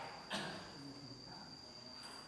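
A single sharp click of a table tennis ball about a third of a second in, over a steady high-pitched whine.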